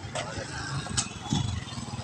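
Street background noise: a steady low vehicle rumble and voices, with a couple of sharp clicks near the start and about a second in.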